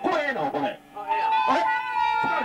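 A punk singer yelping and screaming wordlessly into a microphone, over a steady high ringing tone, with a brief break just before the middle.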